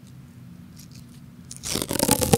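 Roll of autoclave tape being peeled off, a quick run of loud crackling that starts about one and a half seconds in, close to the microphone.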